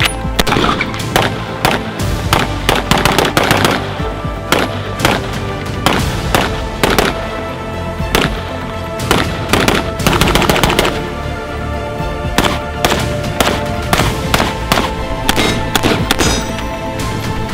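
Rapid strings of rifle shots from a Tommy Built T36C, a civilian G36C clone, over background music.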